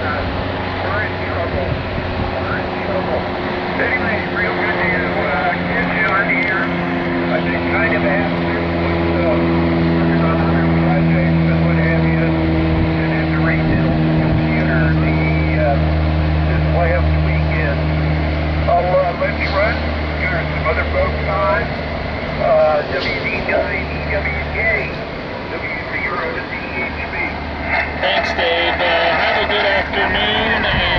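A motor vehicle's engine running close by, a steady low hum that grows louder over the first ten seconds or so and stops about 25 seconds in.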